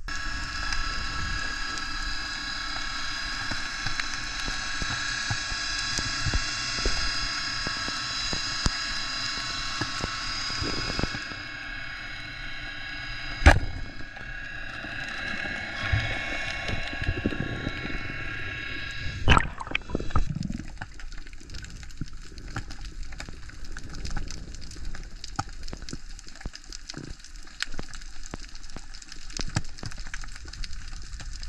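Underwater sound over a kelp reef: water noise with irregular clicks and crackling, and a few sharper knocks. For the first two-thirds, a steady whine of several high tones sits over it.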